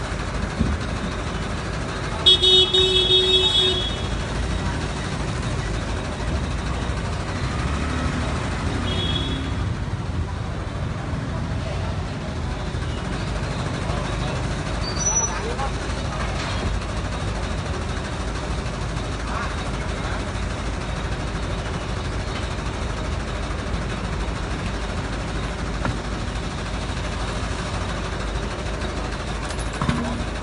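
A vehicle engine idles steadily amid street traffic. A vehicle horn sounds for about a second and a half, about two seconds in, and there is a shorter toot near nine seconds.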